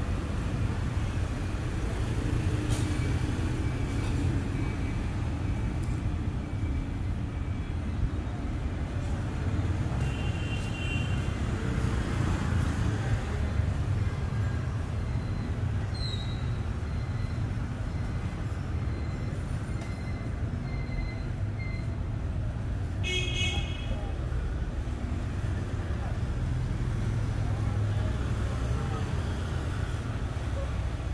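Continuous city street traffic, mostly motorbikes and scooters, a steady low rumble of engines. A short horn toot sounds once, a little after the middle.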